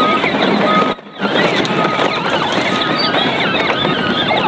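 Heavy earthmoving machinery running, with a backup alarm beeping about once a second; the sound drops out briefly about a second in.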